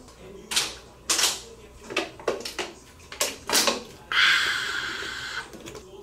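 A run of short, sharp clicks and knocks, like small objects being handled, followed about four seconds in by a hiss lasting about a second and a half that fades as it goes.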